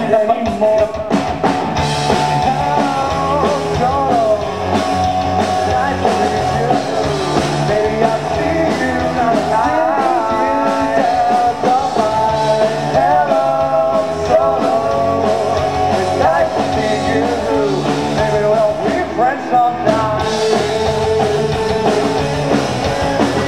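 A rock band playing live through a PA, with electric guitar and drums under a melodic lead line.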